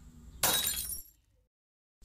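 Breaking sound effect for a USB pen drive being snapped: one short crash about half a second in, lasting under a second and cutting off suddenly.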